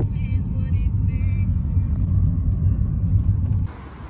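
Steady low rumble of a car's engine and tyres heard from inside the cabin while driving. It cuts off abruptly near the end.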